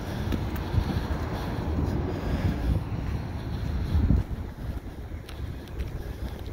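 Wind buffeting the microphone: a steady low rumbling rush, with a few low thumps about a second in and again near four seconds.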